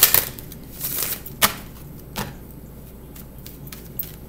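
Tarot cards being handled and laid down on a table: a few sharp snaps and taps, the loudest about a second and a half in.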